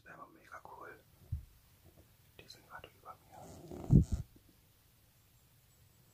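Whispered voices in short phrases, with a loud low thump about four seconds in.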